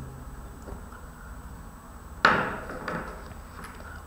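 Pen writing on paper on a desk, mostly quiet. One sharp knock comes about two seconds in, followed by a couple of faint ticks.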